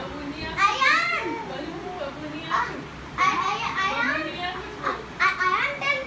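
Young children shouting and squealing in play, high-pitched calls in three spells, over lower background talk.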